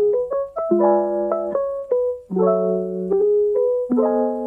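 Piano music, struck chords and melody notes that ring on and overlap.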